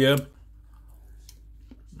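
A man chewing a mouthful of curry potato with his mouth closed: a few faint clicks over a steady low room hum, after the end of a spoken word.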